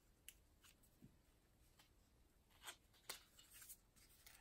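Faint rustling and a few small, sharp clicks of a stiff kraft-paper envelope sleeve being handled and eased open by hand, the clearest click about three seconds in.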